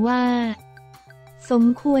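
A woman narrating in Thai over soft background music. Her first word is drawn out on a steady pitch for about half a second, then the music carries on alone for about a second before she speaks again.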